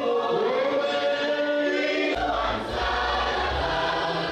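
A choir of voices singing together in held, gliding notes, in a gospel style. A deep low sound joins about halfway through.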